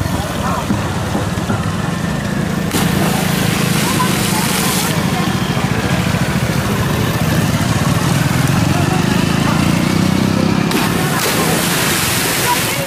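Onlookers' voices over the engines of passing motorcycles and scooters, with a wide rushing noise that swells twice, about three seconds in and near the end.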